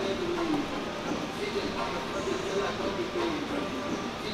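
Rap music with a man's rapping voice over a beat.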